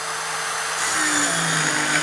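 Rotorazer compact plunge circular saw running and cutting through a strip of wooden trim at an angle; its motor pitch drops slightly about a second in as the blade works through the wood.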